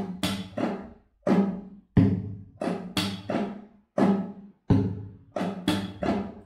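Nylon-string classical guitar strummed in a fingerstyle flamenco rhythm: a repeating pattern of chord strokes, about two a second, each with a sharp percussive attack (thumb kick, slap and pinky and index upstrokes) and the chord ringing after it.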